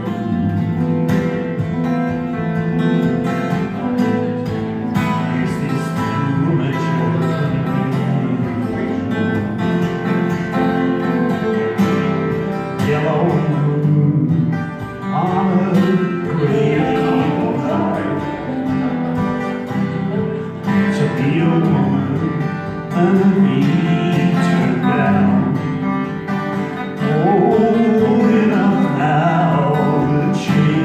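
Two acoustic guitars played together live, with a man singing over them, the voice strongest in the second half.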